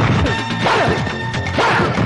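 Film fight sound effects: crashing blows, about one a second, over background music.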